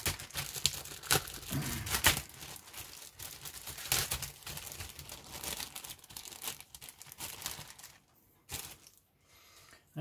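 A clear plastic parts bag crinkles and rustles in irregular crackles as a plastic sprue is handled and pulled out of it. It goes quiet for the last two seconds apart from one sharp click.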